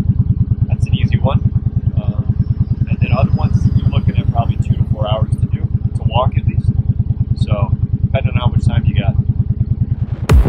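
Motorcycle engine idling with a steady, rapid low pulsing, while people talk nearby over it.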